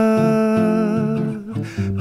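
Bossa nova song: a singer holds a long sung note over acoustic guitar picking. The voice fades out about a second and a half in, leaving the guitar alone for a moment.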